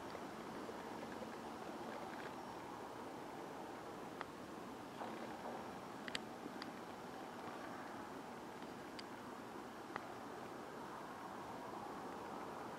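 Faint outdoor ambience: a steady low hiss, with a few light clicks from the camera being handled while it is focused.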